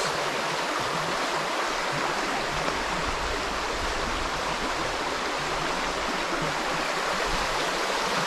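A shallow stream running over stones and rocks, a steady rush of water.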